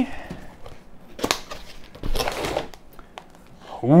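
Cardboard filament box being opened and a plastic-bagged filament spool handled: short spells of plastic and cardboard rustling, with a sharp knock about a second in.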